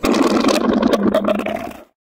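Transition sound effect: a loud, steady rush of noise that tapers slightly and then cuts off abruptly a little before the end.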